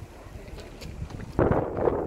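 Wind buffeting the microphone: a low rumble that jumps to a loud gust about one and a half seconds in.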